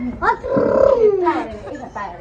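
A person's loud, rough, drawn-out cry starting about half a second in and falling in pitch, with short vocal sounds around it.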